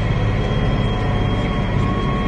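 Case IH Magnum tractor's six-cylinder diesel running at full throttle under heavy load, heard inside the cab as a steady low drone with a faint high whine. It is pulling a disc uphill and can hardly keep its RPMs up.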